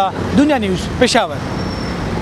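Road traffic on a busy street: a steady rumble of passing buses, cars and motorbikes, carrying on alone once a man's voice stops just over a second in.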